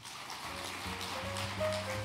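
Audience applauding steadily, with background music playing over the clapping.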